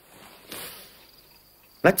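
Faint, steady insect chirring: a thin high tone under a soft rush of noise that swells about half a second in.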